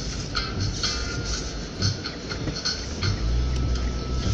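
Car interior noise while driving on a wet road in rain: a steady low rumble of tyres and engine with irregular short taps and rattles several times a second. The rumble grows stronger about three seconds in.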